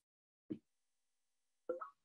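A single gulp as a man drinks from a bottle, with a second short mouth sound near the end as the drink ends.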